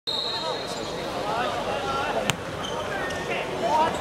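A football struck once with a sharp thud about two seconds in, over players and spectators calling out on the pitch. A thin high tone sounds through the first second.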